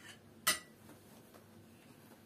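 A single sharp clink about half a second in: a metal spoon being set down against a dish or the table.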